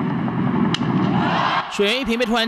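Ballpark crowd noise with one sharp crack of a bat hitting a pitched ball about a second in, followed by the crowd's cheer swelling as the ball is hit into the outfield.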